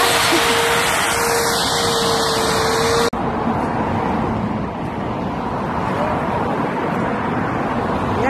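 Electric hedge trimmer running with a steady hum and buzz, cutting off suddenly about three seconds in. After it a softer steady rushing noise continues.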